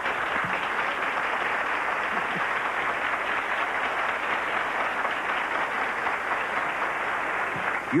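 Studio audience applauding, breaking out suddenly and keeping up steadily.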